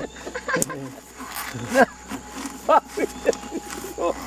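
Several short bursts of laughter from a few people, spaced about a second apart, over faint handling noise of a canvas spare-tire cover.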